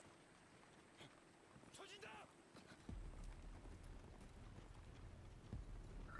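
Near silence, then from about three seconds in a faint low rumble with light hoofbeats of galloping horses.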